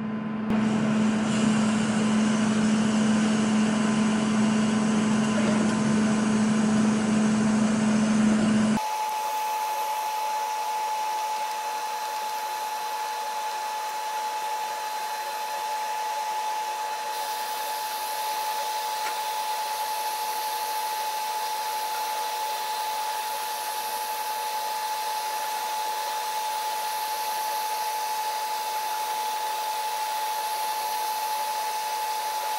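A K40 CO2 laser cutter running while it cuts cardboard: a steady whir of its fans and pumps with a steady hum. About nine seconds in, the sound changes abruptly to a quieter, even whir with a steady higher whine.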